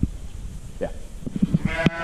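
Sheep bleating briefly, with a few soft thumps.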